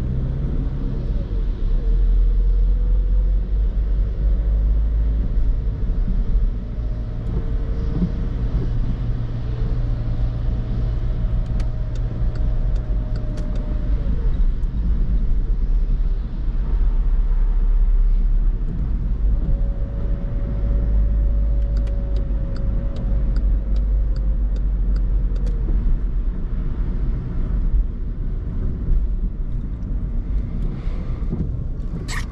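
Interior sound of a Skoda Fabia II's 1.6 TDI common-rail four-cylinder diesel driving slowly in city traffic: a steady low engine rumble whose pitch rises and falls as the car accelerates and slows, with tyre noise from the wet road.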